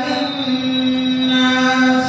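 A male voice reciting the Quran in the melodic tilawat style into a microphone, holding one long, steady note.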